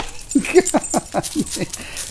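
A quick run of about eight short vocal sounds, each falling in pitch, over about a second and a half.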